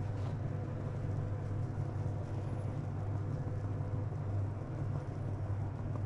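A steady low machine hum, even in level throughout, like a running kitchen appliance motor or fan.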